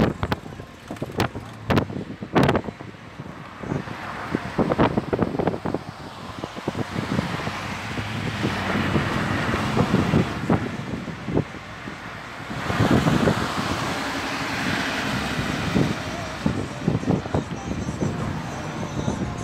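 Road noise of a car driving along a highway, with wind and a scatter of sharp knocks and buffets on the microphone, most of them in the first few seconds; the rushing noise swells louder about two-thirds of the way through.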